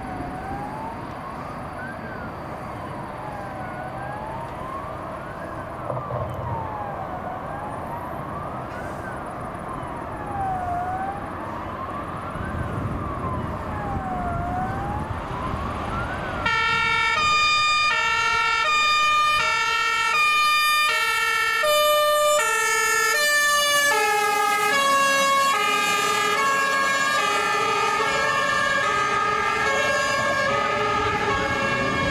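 Emergency vehicle sirens wailing, sweeping up and down in pitch with each rise or fall taking about two seconds, over low vehicle rumble. About halfway through, the sirens cut off suddenly and an electronic dance music track takes over, louder.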